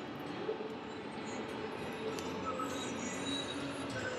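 Steady rushing noise of Montmorency Falls heard from across its basin, with a few faint higher tones over it.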